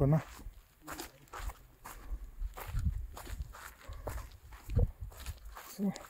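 Footsteps on a dry, grassy and stony mountain slope: irregular steps with short scuffs and crunches.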